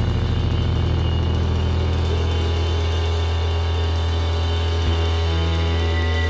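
Heavy psychedelic rock music: a held, bass-heavy chord drones, then shifts to another chord about five seconds in.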